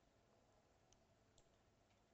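Near silence: faint room tone with three faint short clicks in the second half.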